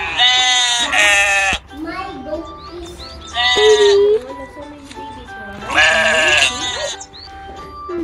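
Sheep bleating: several loud, quavering bleats, two in the first second and a half, another about three and a half seconds in and a longer one about six seconds in, with music playing underneath.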